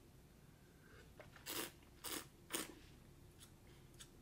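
Three short, soft mouth sounds of wine tasting, about half a second apart, starting a second and a half in.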